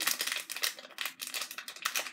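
Packaging crinkling and rustling as a blind-box collectible pin is unwrapped by hand: a quick run of crackles that thins out toward the end.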